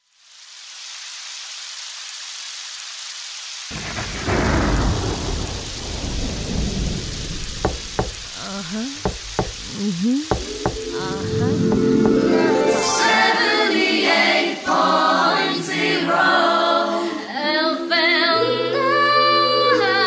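Recorded rain and thunder fade in as a steady hiss, with a deep thunder rumble starting about four seconds in. Music then comes in over it about halfway through, with a sung melody toward the end.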